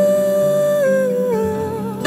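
A woman's voice holding a wordless sung note, then stepping down twice in pitch with a slight waver, over the song's soft accompaniment.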